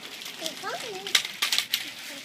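A toddler's high voice babbling briefly, then a quick run of sharp clicks and rattles about a second in.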